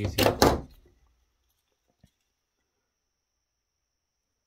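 Near silence, with one faint, short plastic click about two seconds in as the alarm's circuit board is freed from its snap-together plastic case.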